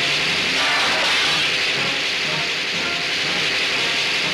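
A loud, steady hissing rush of noise with faint music beneath it.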